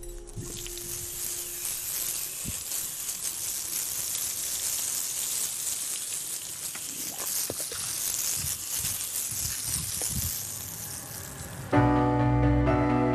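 Water from a hose spraying a horse, a steady hiss with a few faint knocks. Louder music comes in just before the end.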